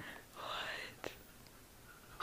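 A person whispering: one breathy, rising sound under a second long, followed by a single short click.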